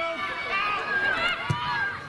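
Outdoor shouting from players and spectators on a football pitch, with a single sharp thud of a football being kicked about a second and a half in.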